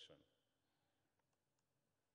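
Near silence: quiet room tone, with a few faint clicks a little over a second in.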